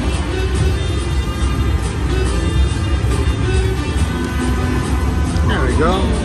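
Buffalo Triple Power slot machine playing its game music and reel-spin sounds during a spin, over the busy din of a casino floor.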